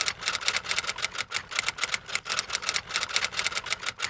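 Typing sound effect: rapid keystroke clicks at about ten a second.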